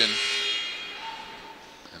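Shot clock buzzer marking a shot clock violation, its steady tone ending about half a second in, followed by gym background noise that fades away.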